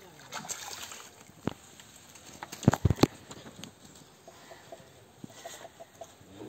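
A landing net holding a freshly caught fish knocking against a brick bank as it is hauled out of the water. There is one sharp knock, then a quick cluster of loud knocks and clatters a second later, then one more.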